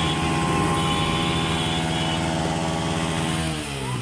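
Motorcycle engine held at raised revs at a steady pitch, with the revs dropping away near the end.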